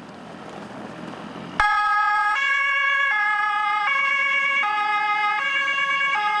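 Electronic two-tone emergency siren of a fire-brigade Ford Kuga command car. It switches on suddenly about a second and a half in and alternates between a high and a low tone roughly every three-quarters of a second. Before it, a rising rush of noise.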